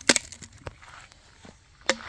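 A few sharp crackles and clicks, the loudest near the end, from a scooter's hot exhaust muffler spitting as water poured into it boils off.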